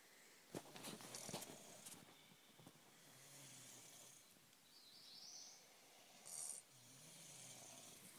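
Faint snoring from a sleeping person: two slow, drawn-out snores, about three seconds in and again near the end. There is soft rustling and clicking of handling in the first couple of seconds.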